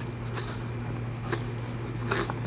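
Faint handling noise of hands fitting a coiled cable into a foam-lined cardboard box: two light clicks over a steady low hum.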